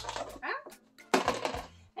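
Clear plastic rotisserie-chicken clamshell being pried open: a click as the lid unlatches, then crackling and crinkling plastic, loudest a little past halfway as the lid comes off the base.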